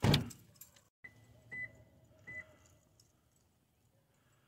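A car door slams shut, loud and sudden with a short ringing decay. After a brief break, two short high-pitched beeps sound.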